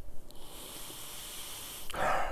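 One long, steady sniff through the nose with the nose held in a glass of beer, lasting about a second and a half: a reviewer nosing the saison's aroma.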